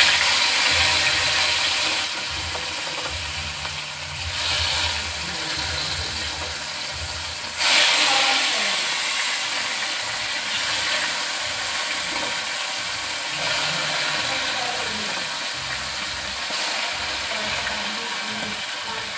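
Turmeric-coated pieces of snakehead (shol) fish sizzling in hot oil in a pan. The sizzle starts suddenly as they go in and surges again about eight seconds in as more pieces are added.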